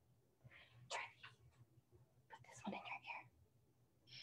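Near silence over a low steady hum, with faint whispered or off-mic speech in two short stretches, about a second in and again near three seconds.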